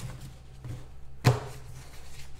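A single sharp knock a little past halfway as an empty trading-card box is handled on the table, over a faint steady hum.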